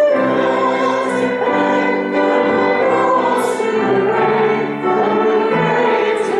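A small group of voices sings a praise song to violin accompaniment, sustained sung notes and held instrumental tones running without a break.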